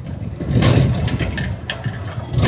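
Low, gusty rumbling of wind buffeting the phone's microphone through the open mesh of the swinging Ferris-wheel car, swelling from about half a second in, with a few brief clatters.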